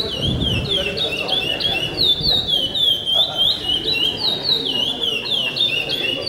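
A caged songbird singing its 'pico-pico' song: a fast, unbroken run of clear, high whistled notes, each sweeping down in pitch, about four notes a second.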